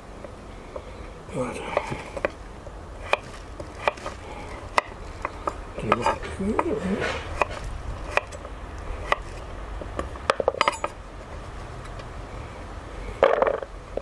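Chef's knife chopping peeled tromboncino squash into small chunks on a wooden chopping board: irregular sharp knocks of the blade hitting the board, with a quick run of several chops a little past ten seconds in.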